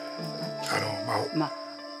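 A man's voice making short, hesitant sounds in a pause mid-sentence, over a steady high insect chirring and soft background music.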